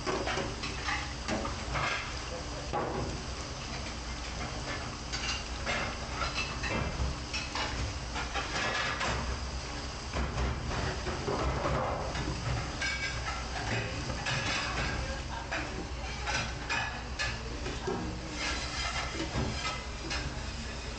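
Stainless steel hotel pans being scrubbed and handled in a sink of soapy water: irregular metal clatter, scrubbing and splashing over a steady background hum.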